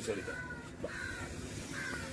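Crows cawing faintly, three calls a little under a second apart.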